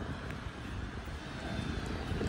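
Steady, quiet rumble of distant engine noise, with no single event standing out.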